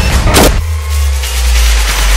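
Cinematic trailer sound design: a sharp hit about half a second in, followed by a deep, steady bass rumble that holds on.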